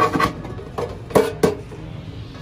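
A metal tin box being handled and its hinged lid opened: a few sharp metallic clicks and knocks, two at the start and two about a second in, the loudest of them about a second in.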